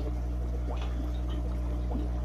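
Steady low hum with faint trickling water from a running aquarium.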